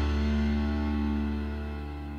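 Music: a held chord ringing and slowly fading out.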